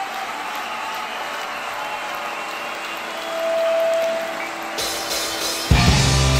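Rock band on stage: a low wash of applause-like noise with one held note about three seconds in, then the full band comes in loudly with guitar and bass near the end.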